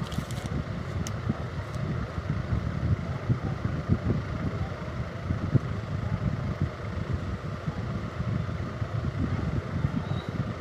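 A steady, uneven low rumble of background noise, with a few faint clicks in the first two seconds.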